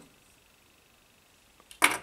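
Near silence, then near the end one brief rustle of handling as a hand goes to the bubble-wrapped package in a cardboard box.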